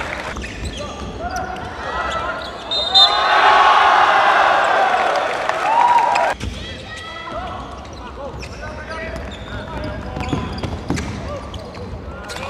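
Live court sound from a basketball game in a gym: a ball bouncing on the hardwood floor, short squeaks of sneakers, and players' voices calling out. The sound drops abruptly about six seconds in and continues more quietly.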